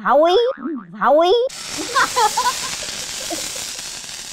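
Comic sound effects edited into a TV talk show: a wobbling, up-and-down boing for about the first second and a half, then a steady hiss that starts suddenly.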